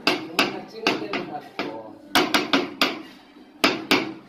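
Mallet tapping a large ceramic wall tile to bed it into a thick sand-and-cement mortar bed: about a dozen sharp taps in irregular runs, with a short pause about three seconds in.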